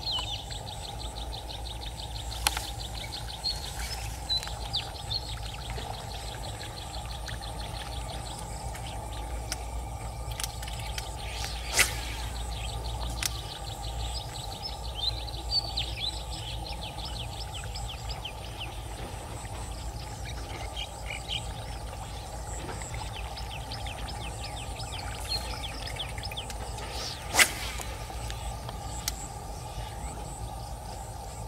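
Small birds chirping in rapid, ticking trills over a steady low background noise, with two sharp clicks, one near the middle and a louder one near the end.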